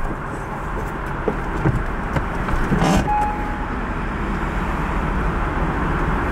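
Steady low rumble of a car engine idling, heard from inside the cabin, with a few faint knocks.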